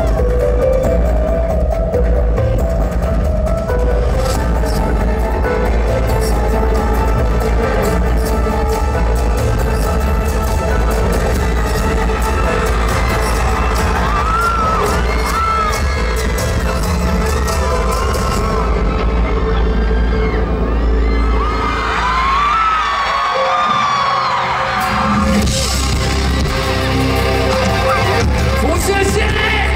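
Rock band playing live through a festival PA, loud electric guitars, bass and drums in the instrumental opening of a song. The low end drops out briefly about 23 seconds in.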